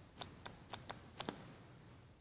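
Faint, light clicks and taps of a stylus on a drawing tablet during handwriting, about six in quick, irregular succession and dying out about a second and a half in.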